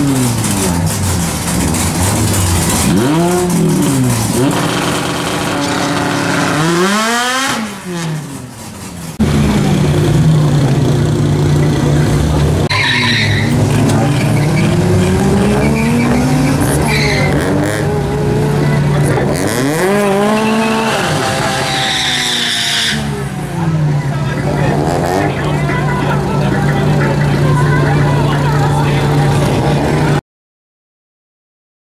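Drag-racing cars running at full throttle, engine pitch climbing through the gears and dropping at each shift, repeated several times. A steady engine drone is held from about a third of the way in, with short bursts of tyre squeal.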